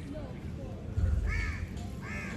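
A crow cawing: a single short caw about a second and a half in.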